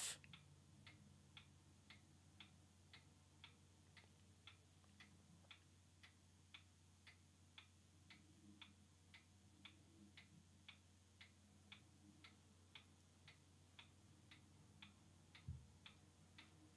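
Faint, evenly spaced ticking, about two ticks a second, over a low steady hum, with a soft thump near the end.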